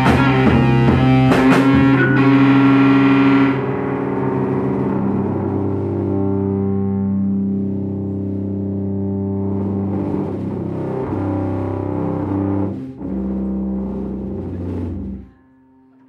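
A live rock band ends a song. Drums and guitars play together for the first three seconds or so, then the drums stop and held electric guitar and bass notes ring on, changing pitch a few times. The notes cut off suddenly near the end.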